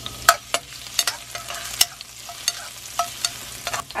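Minced garlic sizzling in hot oil in a wok, stirred with a metal spatula that scrapes and clicks against the pan at irregular moments. The garlic is being fried until light brown.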